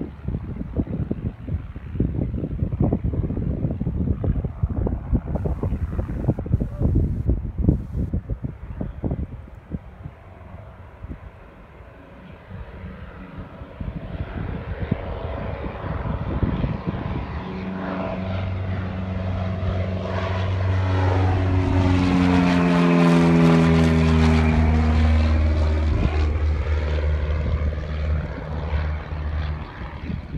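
Wind buffeting the microphone, then a light single-engine piston propeller airplane taking off and climbing past at full power. The engine grows louder, peaks about two-thirds of the way in, and drops in pitch as it passes overhead and moves away.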